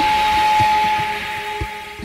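Tail of a radio station ID jingle: one steady whistle-like tone held over a hiss, fading out near the end.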